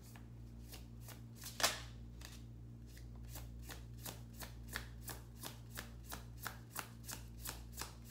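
Tarot deck being shuffled overhand by hand: a steady patter of short card slaps, about four a second, with one louder snap about one and a half seconds in.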